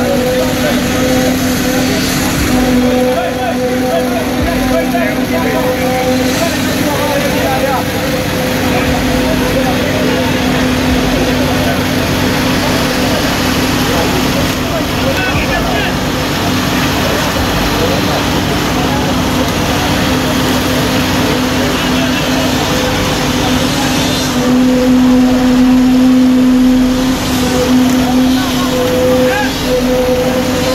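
Heavy diesel construction machinery running steadily at an even pitch, under the chatter of a large crowd.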